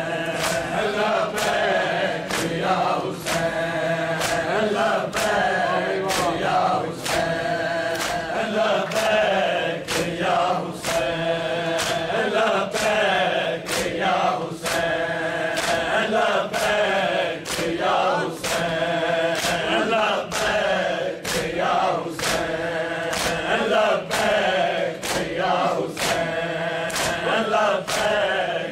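A group of mourners chanting a noha in unison, kept in time by the sharp, even beat of hands striking chests in matam.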